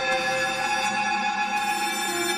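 Ambient instrumental music: layered tones held steady, with no beat.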